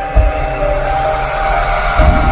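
Intro music: a few held notes that step up and down over a low bass, with a deep hit just after the start and another at the end.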